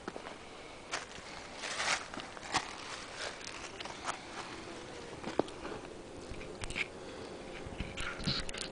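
Scattered crackles, clicks and rustles of footsteps and close handling by the trunk. A faint steady hum, the honey bee colony inside the hollow live oak, comes in about halfway through as the camera reaches the hole.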